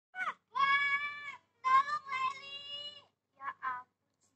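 High-pitched, drawn-out voice-like calls: a short gliding call, then two long held calls at a steady pitch, then two short calls near the end.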